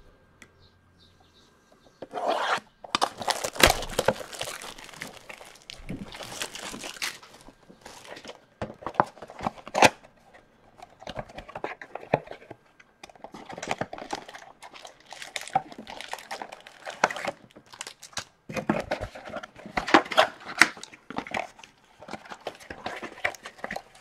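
Plastic shrink wrap being torn off an Upper Deck Series One hockey card blaster box and crumpled, then the cardboard box being pulled open: irregular crinkling and tearing with sharp crackles, starting about two seconds in.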